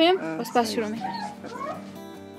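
The last syllables of a voice, then short wavering calls that rise and fall in pitch, like a meow, as soft guitar music fades in.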